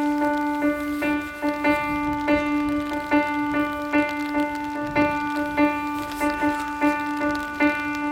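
Jazz piano playing alone: one note struck over and over in an uneven pulse, about two to three times a second, with other notes and chords sounding around it.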